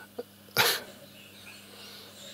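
A single short, breathy burst of air from a person, like a cough or huff, about half a second in, over a faint steady hum.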